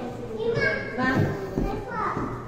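Children's voices: high-pitched chatter and calling out of children at play.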